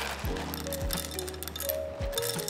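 Whole coffee beans poured from a paper bag into a 1Zpresso Q Air hand grinder, landing as scattered small clicks and clinks, over background music with steady held notes.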